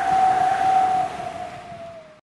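Logo sting sound effect: a rushing hiss with one steady tone held through it. It swells, then fades, dipping slightly in pitch as it ends.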